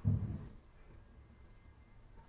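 A woman's voice says a single word in the first half second, then near silence: room tone.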